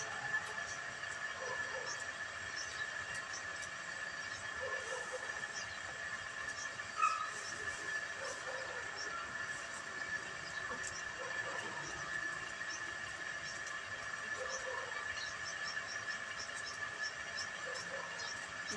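A straw-and-ember fire crackling faintly as it is stirred with a pole, under a steady high-pitched whine; a single louder knock about seven seconds in.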